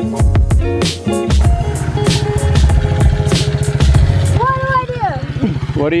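Background guitar music that stops about four seconds in, over a small SSR 70 pit bike engine idling with an even, rapid low pulse. Voices come in near the end.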